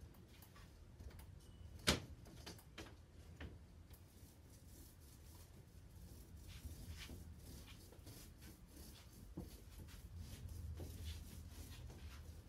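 Scattered light clicks and knocks of thin wooden strips being handled and laid into a gluing jig, with one sharper knock about two seconds in, over a low steady background rumble.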